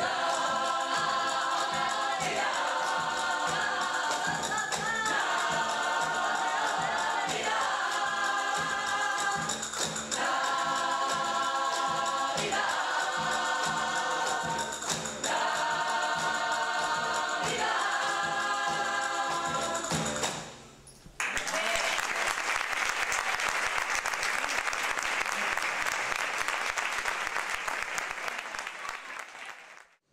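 Processional brass band of cornets and trumpets playing held chords that change about every second and a half, ending about twenty seconds in. Audience applause follows and fades out near the end.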